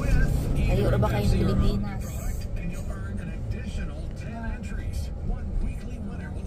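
Car cabin noise from a moving car: steady low road rumble with an engine hum that eases off about two seconds in, and a faint voice now and then.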